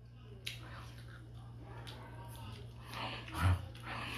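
A person eating with a spoon from a plate: a few sharp clicks of the spoon and soft chewing, with a short muffled hum through a full mouth about three and a half seconds in.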